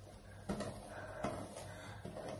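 Faint brushing sounds of a paddle hairbrush drawn through hair, with two slightly louder strokes.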